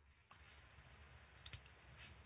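Near silence, with a faint double click about one and a half seconds in.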